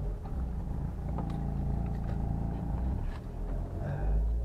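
A car's engine and road noise heard from inside the cabin as the car drives off: a steady low rumble.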